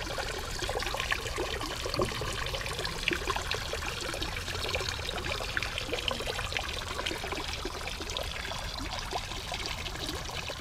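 Water from a garden pond's pump-fed water feature trickling and splashing over rocks into the pond: a steady, busy run of many small splashes.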